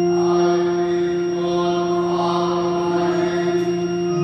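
Congregation singing a hymn over an organ, which holds a steady low chord beneath the voices.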